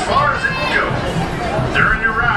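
Indistinct chatter of many riders, children's voices among them, boarding a roller coaster train.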